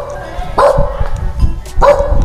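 Dog barking: two barks a little over a second apart.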